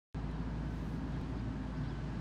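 Outdoor background noise, a steady low rumble, cutting in abruptly out of dead silence just after the start.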